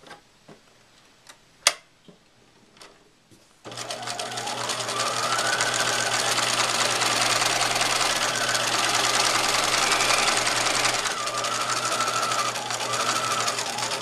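Sewing machine stitching a straight seam line along the edge of a fabric pocket. A few light clicks come first, then about four seconds in the machine starts, picks up speed and runs steadily, its motor pitch rising and falling a little.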